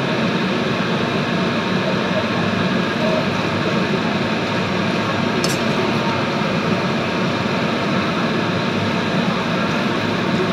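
Noodles frying in a wok over a gas burner, giving a steady, even frying noise, with one brief click about halfway through as the metal spatula touches the wok.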